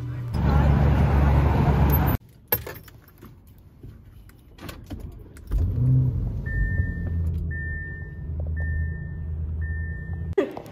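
Loud street noise for about two seconds, then, inside a car, scattered clicks and a Lamborghini's engine starting about five and a half seconds in and settling to a steady idle. A dashboard chime beeps four times, about a second apart, over the idle.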